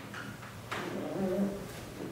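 Chalk tapping on a blackboard, then a drawn-out, wavering wordless hum from a voice lasting about a second in the middle.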